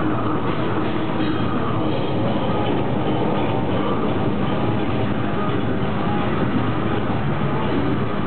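Death metal band playing live: heavily distorted guitars and very fast drumming blurred together into a dense, unbroken wall of sound.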